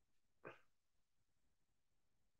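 Near silence, with one brief faint sound about half a second in.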